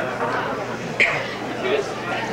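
Indistinct speech from actors on a stage, picked up from a distance, with a brief sharp sound about a second in.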